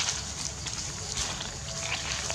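Dry leaf litter rustling and scuffing under a monkey's steps, in a few brief scuffs over a steady low rumble.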